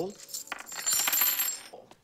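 Gold coins poured out of a pouch onto a hotel front-desk counter: a dense metallic jingle of clinking, ringing coins lasting about a second, starting about half a second in.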